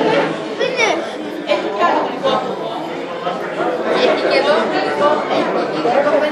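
Many people talking at once around dinner tables: a steady hubbub of overlapping chatter in a large room.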